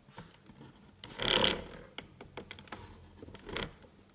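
Drafting tools worked on paper on a drawing board: a scrape about a second in, the loudest sound, a shorter one near the end, and scattered small clicks and taps.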